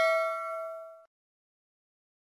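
A bell-like chime closing an outro jingle, ringing and fading, then cut off suddenly about a second in.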